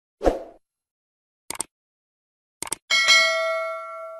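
Sound effects of a YouTube subscribe-button animation. A short thump comes near the start, then two quick pairs of clicks about 1.5 s and 2.7 s in. A bell-like notification ding follows about 3 s in and rings on, slowly fading.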